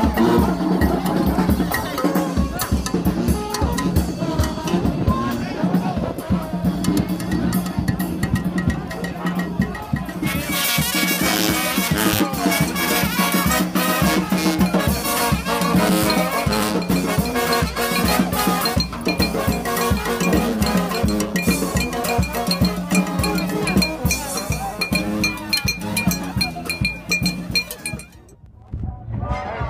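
New Orleans brass band playing live in a second line parade: a sousaphone bass line under horns, with drums and cymbals keeping a steady beat and crowd voices mixed in.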